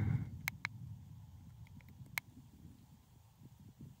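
Footsteps through dry grass with a low rumble of wind or handling on the phone microphone, fading as the walking slows, and a few sharp clicks about half a second and two seconds in.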